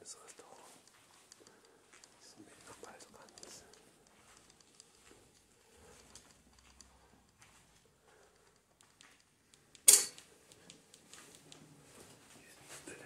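Faint whispering and soft handling noises, then one sharp knock about ten seconds in, by far the loudest sound.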